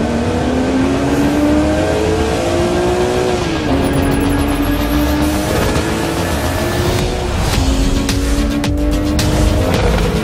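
Porsche 718 GTS's 2.5-litre turbocharged flat-four engine accelerating hard, its pitch climbing and dropping back at two upshifts, about three and a half and seven and a half seconds in.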